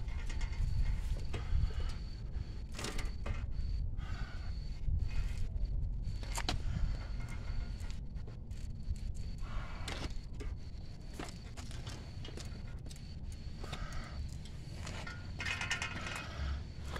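Scattered light clicks and knocks from a heavy adult tricycle with a wire basket being handled and moved, over a steady low rumble on the microphone.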